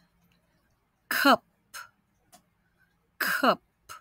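A woman's voice saying one short word twice, about two seconds apart, each time with a falling pitch and a short puff of breath at the end: the word "cup", read slowly for a listener to pick out its middle vowel.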